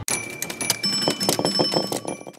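Channel logo animation sound effect: a quick run of clicks and pops overlaid with bright, ringing bell-like chimes that stop abruptly.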